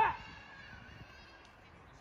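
A man's voice calls out a short one-word command at the very start, then a low outdoor background for the rest, with a faint high-pitched sound in the first half.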